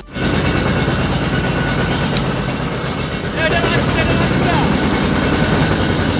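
Motorboat engine running steadily with a rhythmic low chug, heard from on board, starting suddenly at the beginning. Faint voices come through it about halfway.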